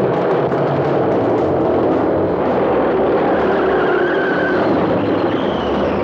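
A motorcycle engine running under the film's background music.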